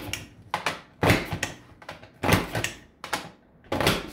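Creative Memories Border Maker punch cartridge clunking as it is pressed down repeatedly to cut a woven-scallop border into cardstock: a series of sharp punch clicks, about one to two a second, as the cartridge is worked along the paper guide.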